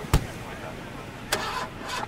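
Car sounds from a music video's soundtrack: a sharp thump just after the start, then a click about a second later, over faint steady noise.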